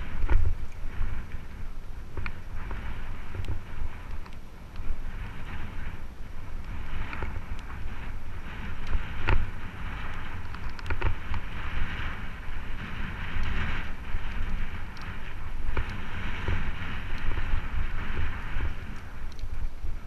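Mountain bike riding over a dirt singletrack. Tyres crunch and hiss on the dirt, with scattered clicks and rattles from the bike over bumps. Wind buffets the microphone, adding a constant low rumble.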